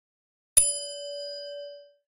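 Notification bell chime sound effect: one clear ding about half a second in, ringing on a steady pitch and fading away over about a second and a half.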